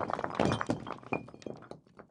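Crumbling-brick sound effect: a dense clatter of knocks and falling debris that thins out and stops shortly before the end.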